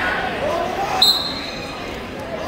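Referee's whistle, one short blast about a second in, starting the wrestling bout, over the chatter of a gym crowd.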